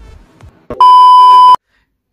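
A single loud, steady, high-pitched electronic beep lasting under a second, cut off abruptly: an edited-in bleep sound effect.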